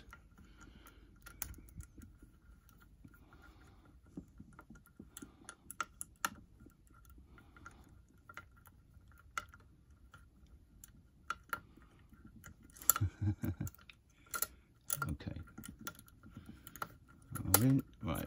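Irregular small metallic clicks and scrapes of a home-made tension tool and wire pick being fitted into the keyhole of an old lever sash lock. There is a brief low murmur of voice near the end.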